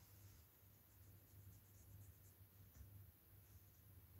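Near silence over a low steady hum, with a few faint, light scratches from a fine paintbrush and the handling of a vinyl doll head on the worktable.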